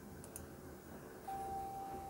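A faint, steady tone at a single pitch starts a little over a second in and holds unchanged, over low room noise with a couple of faint ticks before it.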